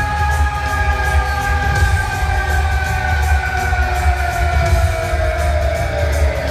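Live rock band playing loud: a long held note slides slowly down in pitch over pounding drums and bass.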